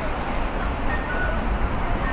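Busy city street at night: a steady rumble of traffic and pedestrians. Over it, a repeating two-note electronic chirp, a higher note then a lower one about every second and a half, typical of a Japanese pedestrian crossing's audible signal.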